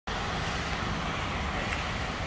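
Steady, even background noise of an indoor vehicle service bay, with no distinct events.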